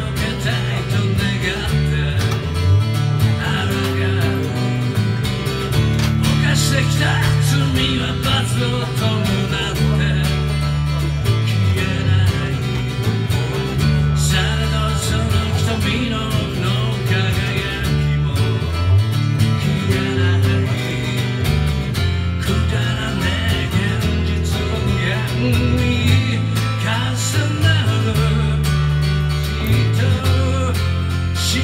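Live acoustic duo playing an instrumental stretch of a song: a steel-string acoustic guitar strummed steadily over a bass guitar walking a moving bass line.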